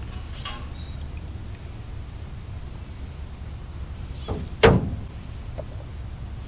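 Metal canning lids, jars and tongs handled in an aluminum canoe: a faint knock near the start and one sharp metal clank about four and a half seconds in, over a steady low rumble.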